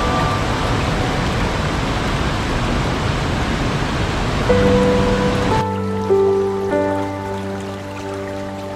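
Rushing water of a waterfall cascade under slow, soft music notes. A little over halfway in, the water sound cuts off suddenly, leaving only the music: slow sustained notes over a low held drone.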